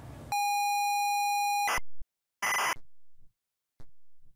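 A steady electronic beep held for about a second and a half, ending in a sharp crackle, followed by a short burst of noise and a few faint clicks.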